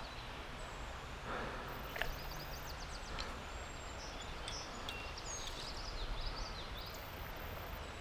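Steady outdoor background hiss with birds chirping in quick, sweeping high notes through the middle of the stretch, and a single faint click about two seconds in.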